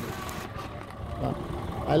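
Car engine idling, a low steady rumble, with faint street noise.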